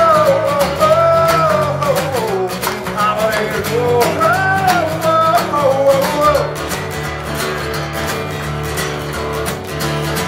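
Acoustic guitar strummed steadily under a long wordless sung melody that glides up and down for about the first six seconds; after that the guitar strums on alone.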